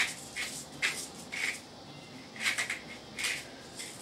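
Pepper mill grinding black pepper in short gritty bursts, one per twist, about half a dozen with a pause in the middle.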